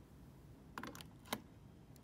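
Plastic clicks as a plug-in Netgear WiFi repeater is pushed into a wall power outlet: a quick cluster of small clicks and scrapes just under a second in, then one sharp click as the prongs seat.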